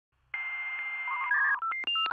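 Electronic intro sting made of telephone-like tones: a steady, hissy tone starts about a third of a second in, then from about a second and a half in gives way to a quick run of short beeps at changing pitches, like a phone keypad being dialled.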